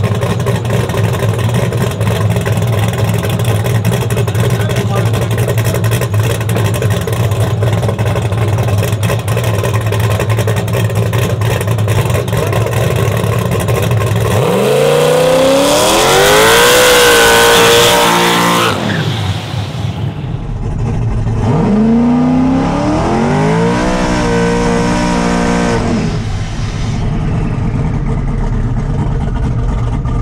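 Twin-turbo LSX V8 of a Chevy Silverado drag truck idling loudly, then revved up twice: about halfway through the engine climbs in pitch for about four seconds and drops back, and a few seconds later it climbs and falls again.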